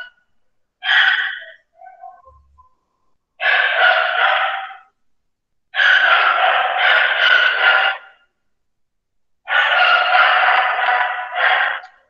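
An animal calling four times. The calls are loud and harsh; the first is short and the other three last about one and a half to two and a half seconds each, a second or two apart.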